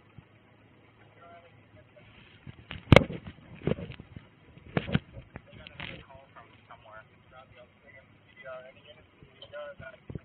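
Faint, indistinct voices, with one sharp, loud knock about three seconds in followed by a few softer knocks over the next three seconds.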